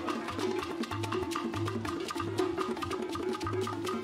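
Live African church procession music with a steady, repeating beat of drums, percussion strikes and a low bass line, with no voice over it.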